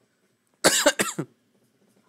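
A person coughing twice in quick succession, a little over half a second in.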